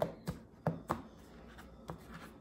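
Tarot cards being handled as the deck is cut, with stacks tapped and set down on a mat-covered table: about four short, sharp taps and card clicks.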